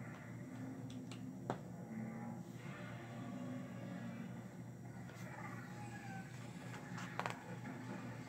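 A few sharp clicks of LEGO plastic pieces being pressed onto a LEGO plate: one about a second and a half in and a quick double click near the end, over a steady low hum.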